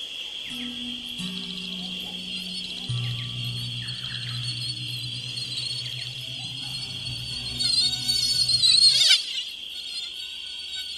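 Background music: low sustained notes that step down in pitch over the first three seconds, over a steady high-pitched chirring. A louder wavering high swell builds near the end and cuts off suddenly about a second before the end.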